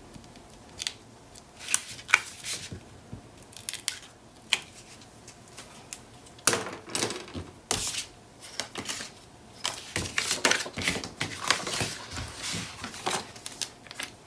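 Small strips of tape being peeled off cardstock with a pointed tool, and paper being handled on a cutting mat: scattered light scratches, taps and rustles, busier in the second half.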